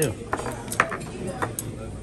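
Restaurant table sounds: a few short, sharp clinks and knocks of tableware, spread through the moment, over low voices.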